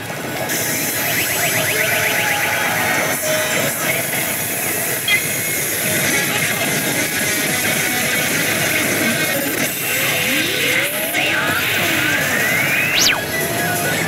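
Oshu! Banchou 3 pachislot machine playing its bonus music and electronic sound effects over the loud din of the parlour, with a rising sweep effect climbing near the end.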